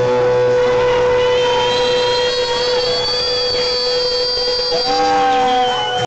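Live rock band playing loud, with a steady held note and long high whistling tones ringing over the band.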